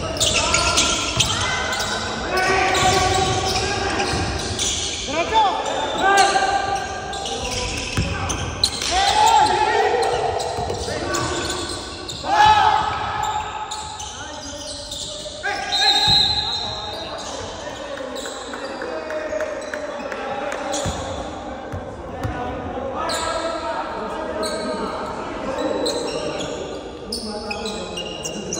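Basketball game on a hardwood gym floor: the ball bouncing in repeated sharp thuds, with players' voices calling out now and then, all echoing in the large hall.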